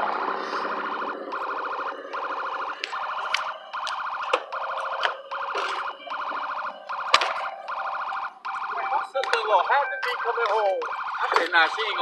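A car's electronic warning tone going off in a steady run of evenly repeated short pulses, with a voice over it near the end.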